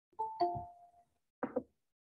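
Google Meet's join-request notification chime: a two-note falling ding-dong, higher note then lower, that rings out and fades within about a second. It is followed about a second and a half in by a short double knock.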